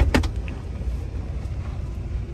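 Low, steady running rumble of a Mercedes-Benz car reversing, heard inside the cabin, with a few sharp knocks right at the start.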